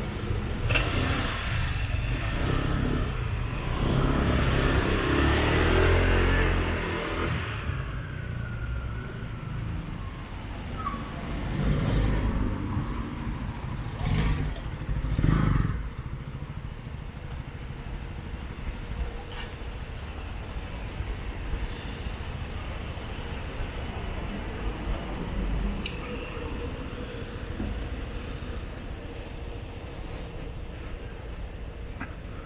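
Cars driving past on a city street: a close pass with tyre and engine noise during the first seven seconds or so, then two shorter passes about twelve and fifteen seconds in, over a steady background of traffic.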